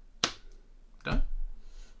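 A single sharp click of a board game piece set down on the table, followed by a low thump as a hand rests on the table.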